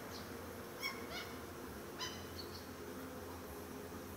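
Gulls calling: a short run of brief high calls about a second in and another short call at two seconds, while the flock jostles over bread.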